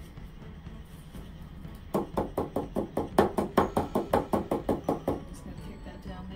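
A stretched painting canvas knocked in quick succession while liquid paint is worked across it: a fast run of hollow knocks, about five a second for some three seconds.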